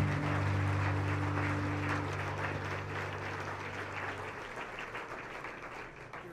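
Audience applauding while the band's last held chord (acoustic guitar and keyboard) rings out and fades away over the first few seconds. The applause thins out towards the end.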